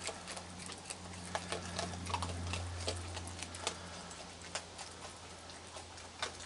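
Raccoons chewing dry kibble and sunflower seeds: an irregular scatter of small sharp crunches and clicks over a steady low hum.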